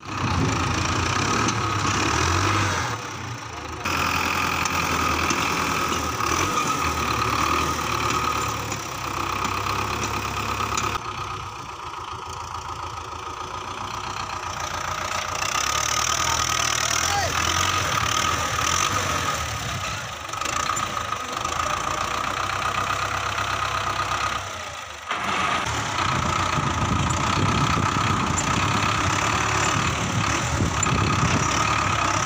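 Belarus 510 tractor's diesel engine running steadily as its front loader works, the sound changing character a few times, at about 4, 11 and 25 seconds in.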